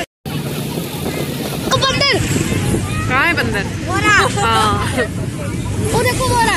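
Tractor engine running steadily while pulling a crowded trolley along a road, with high-pitched voices calling out over it from about two seconds in.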